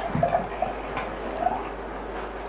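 Water being poured from a plastic bottle into a glass: a few short glugs with small clicks and knocks against the table.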